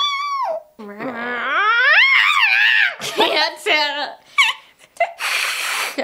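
A young woman imitating a cat with her voice: a short meow falling in pitch, then a long meow that rises and falls. A few short choppy sounds follow, and a breathy hiss comes near the end.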